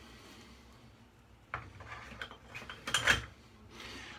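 Things being handled and set down at a bathroom sink: a sudden knock about a second and a half in, then irregular clattering and rustling, loudest about three seconds in.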